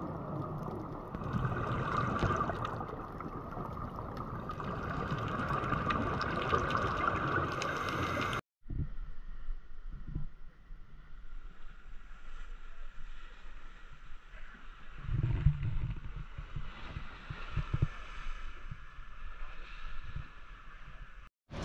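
Muffled, steady rushing of water heard underwater through the camera's housing. After a cut about eight seconds in, a quieter open-air sea and wind sound follows on a boat deck, with a low steady hum and a few knocks.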